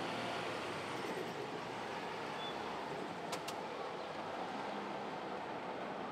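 Rubber-tyred replica-trolley bus driving past on a city street: a steady engine and road noise, with two sharp clicks a little past halfway.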